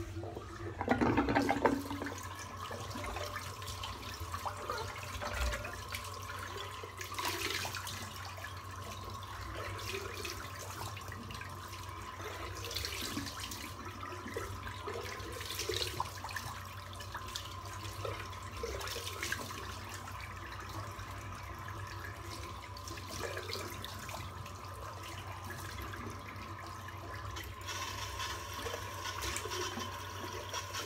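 Water running steadily from a tap into a basin, with intermittent splashes and a louder splash or knock about a second in.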